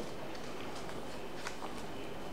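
Quiet room tone with a few faint light ticks and rustles of paper cutouts being handled and pressed down onto a sheet of paper on a table.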